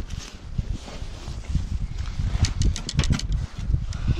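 Close handling noise: rustling, with sharp clicks and knocks as fishing rods are handled around a metal wheelbarrow, over a low rumble on the microphone. A cluster of clicks comes a little past halfway.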